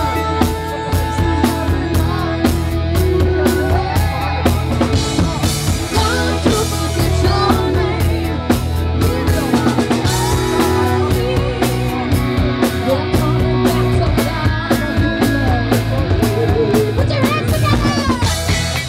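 Live rock band playing loud: a drum kit keeps a steady beat under electric guitar and bass guitar, with a woman singing lead.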